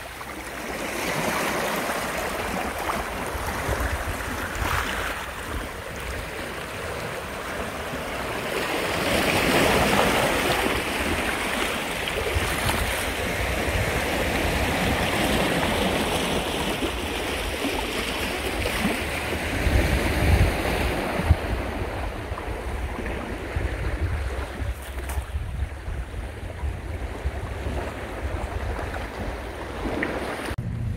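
Small sea waves washing over rocks and pebbles at the shoreline, a steady wash that swells and eases. In the second half a low rumble of wind on the microphone joins in.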